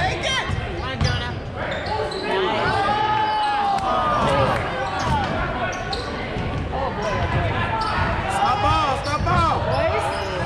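Basketball game in a gym: a basketball bouncing on the hardwood court amid players' and spectators' voices, echoing in the large hall.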